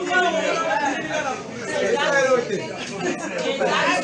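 People talking, with several voices overlapping.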